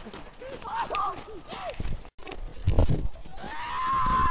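Short high-pitched yelps from people running through snow, then a long drawn-out yell that rises and falls, starting about three and a half seconds in, with a few dull thuds of running footsteps and camera jostling.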